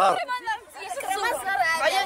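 Speech only: people talking, with several voices chattering.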